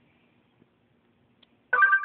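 A baby's brief high-pitched squeal close to the microphone, near the end, after near silence.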